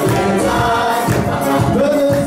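Live gospel worship music: a group of men and women singing together over keyboard accompaniment.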